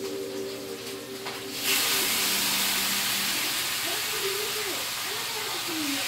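Food going into hot oil in a frying pan on a gas stove: a sizzle breaks out suddenly about a second and a half in and keeps going as a steady hiss of frying.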